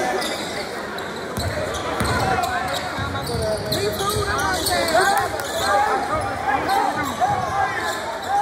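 Basketball sneakers squeaking on a hardwood court in many short chirps, with a basketball being dribbled in low thuds and crowd voices underneath.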